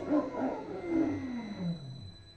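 A whine falling steadily in pitch over about two seconds and fading, as the hydraulic motor and generator of a GenShock regenerative shock-absorber test rig spin down.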